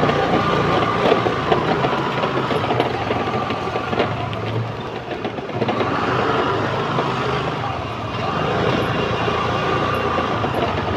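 Street traffic at night: vehicle engines running continuously, with a faint whine that fades out about halfway through and comes back.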